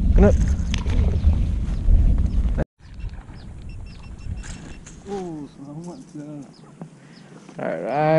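Wind rumbling on the microphone, with a few sharp clicks from handling a baitcasting reel, stops suddenly about two and a half seconds in. After that it is much quieter, with a faint voice in the middle and a louder voice starting near the end.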